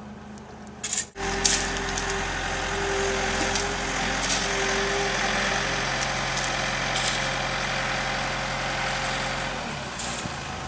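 Diesel engine of earthmoving equipment running steadily with a low hum, starting abruptly about a second in, with scattered light clicks and knocks over it.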